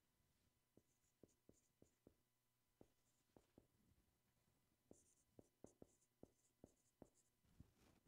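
Faint dry-erase marker writing on a whiteboard: a string of short taps as the tip strokes the board, with small high squeaks in two spells, about a second in and again from about five to seven seconds in.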